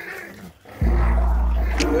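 French Bulldog puppies play-growling as they wrestle, heard during a break in the music. Under a second in, a hip-hop beat with heavy bass comes back in, and a male voice starts singing near the end.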